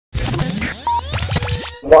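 Short intro music sting full of record-scratch sounds and rising pitch sweeps, cutting off shortly before the end.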